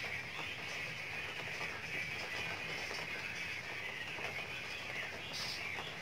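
Quiet, steady background noise with a faint high hiss and no distinct sounds.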